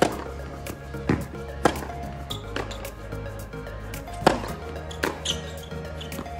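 Background music, over which tennis balls are struck and bounce with several sharp pops, irregularly spaced.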